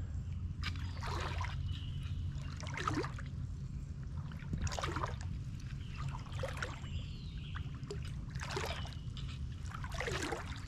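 A person wading through deep floodwater on foot, each stride pushing the water with a swishing slosh, about every one and a half to two seconds.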